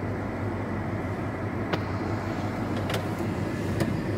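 A vehicle's engine running steadily, heard from inside the cab, with a low hum and a few faint clicks.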